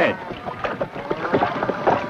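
Water splashing and sloshing with irregular knocks, as horses wade through shallow water and scramble up a muddy bank.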